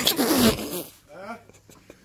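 A man crying out as a dog shock collar on his neck zaps him, with a loud rustling rattle from his jacket and wire shopping basket as he jerks in the first half second, then quieter short voice sounds.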